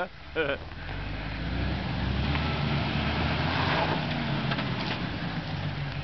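Jeep Wrangler engine pulling steadily under load as the Jeep creeps slowly up a dirt bank, growing louder over the first few seconds and easing slightly near the end, with a rougher crunching noise of tyres on dirt and rock through the middle.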